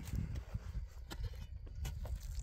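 A few sharp clicks and knocks of broken concretion rock being handled, over a steady low rumble.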